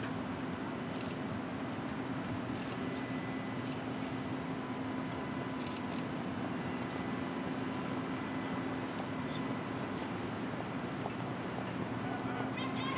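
Steady open-air background noise with a constant low hum and a few faint clicks.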